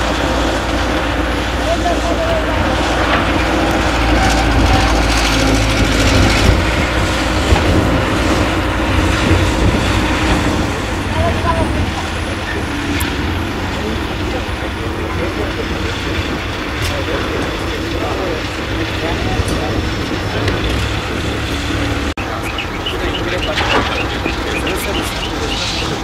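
A heavy diesel truck engine running steadily on a construction site, a low continuous rumble, with indistinct voices in the background.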